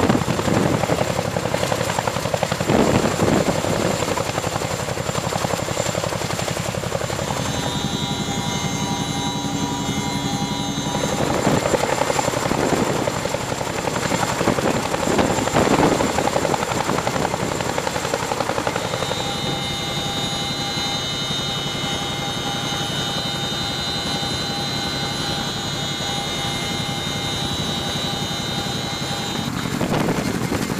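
CH-47 Chinook tandem-rotor helicopter hovering: a rapid, steady rotor beat with a high turbine whine that comes forward about eight seconds in and again from about nineteen seconds on.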